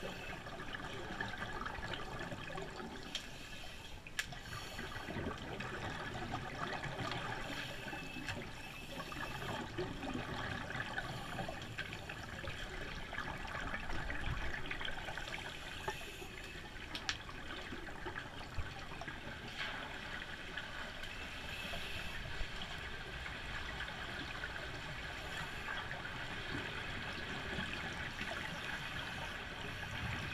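Underwater pool noise heard through a camera housing: steady bubbling and gurgling from divers breathing through scuba regulators, with a few sharp clicks.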